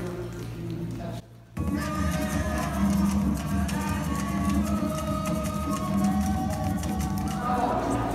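Recorded Haitian rara music starts over loudspeakers after a brief silent gap about a second and a half in: dense, fast repetitive percussion with a short, dry staccato part, over long held horn-like tones.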